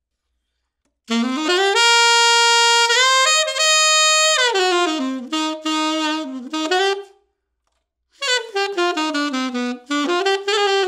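Alto saxophone (a Kilworth Shadow with a DV mouthpiece, set up for a bright pop sound) playing solo. About a second in, a phrase opens with an upward scoop to a long held note, then steps down through a lower line. After a short break about seven seconds in, a second phrase starts with another scoop upward.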